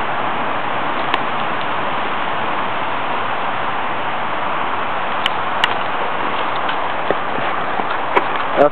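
Sparklers stuck in a watermelon burning with a steady fizzing hiss and a few sharp crackles, the fuse stage before the watermelon bursts.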